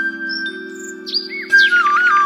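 Flute background music over a steady low drone. A long held flute note fades early, bird chirps come in around the middle, and a new ornamented flute phrase starts about a second and a half in.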